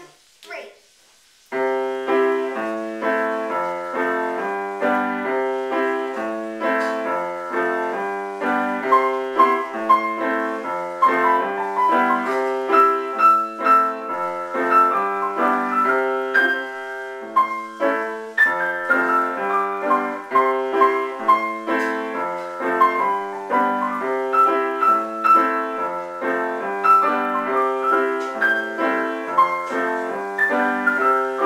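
Grand piano played four hands by a child and an adult, starting about a second and a half in and going on as a steady, evenly paced run of notes in the middle of the keyboard.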